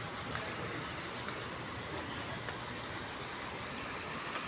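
Water running down the steps of a small tiled ornamental cascade into a shallow pool, a steady, even rush.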